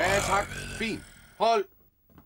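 Band music cutting off about half a second in, followed by a man's short vocal exclamations without words, the loudest around a second and a half in, then the room goes quiet.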